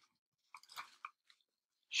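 Near-silent pause with a few faint, short clicks between about half a second and a second in.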